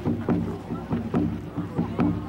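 Rhythmic percussion struck a little more than twice a second, each beat with a short pitched ring that dies away.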